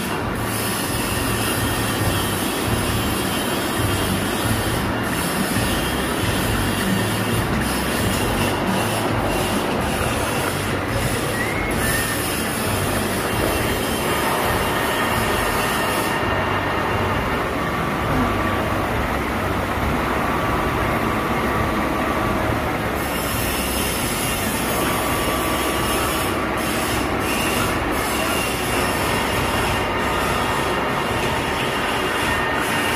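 Milling machine cutting a helical flight into a steel injection-molding screw with an end mill: a steady, continuous metal-cutting noise with thin steady tones over it and the machine's running hum beneath. For several seconds past the middle the sound turns duller, with the highest part dropping away.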